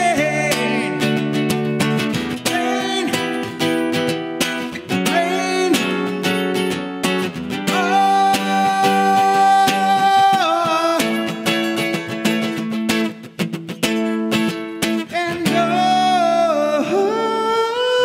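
Acoustic guitar strummed steadily while a man sings along, holding one long note about halfway through.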